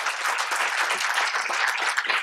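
Audience applauding: many hands clapping steadily.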